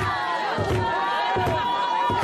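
A crowd of many voices singing and shouting together over a steady low beat, about one thump every three quarters of a second. One voice holds a long high note through the middle.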